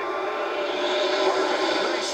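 A pack of NASCAR Sprint Cup stock cars' V8 engines at full throttle on a restart, blending into one steady engine note. Heard through a television speaker.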